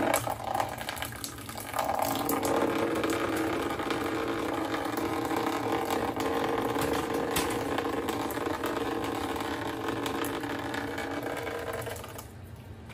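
Water running out of a Daikin air conditioner indoor unit in a thin steady stream, starting about two seconds in and easing near the end; with its drain-up kit fitted, this dripping is expected. A few sharp clicks of handling come at the start.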